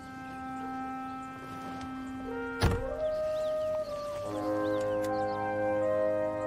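A car door shutting once with a solid thump about two and a half seconds in, over soft background music of held notes that change chord near the end.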